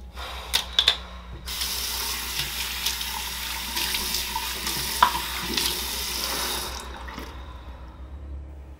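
Bathroom sink faucet running, with hands rinsing under the stream. A few sharp clicks come just before the water starts about a second and a half in, and the water stops near the end.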